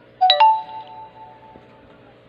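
A two-note chime, sudden and loud, its second note ringing on and fading over about a second and a half.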